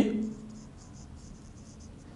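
Marker pen writing on a whiteboard: a faint run of short, scratchy strokes.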